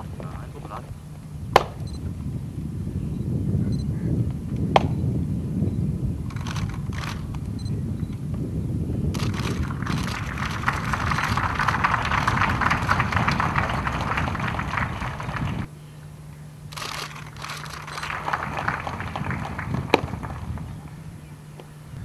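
Crowd applauding: a long stretch of clapping that cuts off suddenly, then a shorter, quieter round, over a low outdoor rumble, with a few sharp single clicks.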